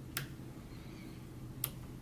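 Two small, sharp clicks about a second and a half apart: a screwdriver tip flipping the slide toggles of a DIP switch on a breadboard.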